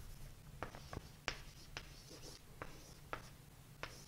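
Faint writing on a board: a scattered series of light, sharp taps and short scratches as a mathematical expression is written out.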